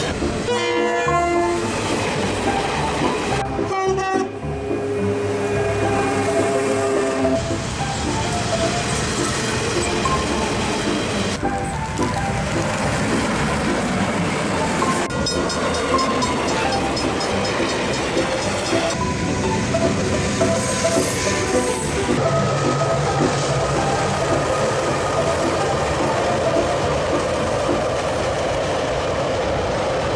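Diesel freight trains passing, with wagons rumbling over the rails, a horn sounding at times and level-crossing warning bells ringing. The sound is made of short clips that cut abruptly from one to the next.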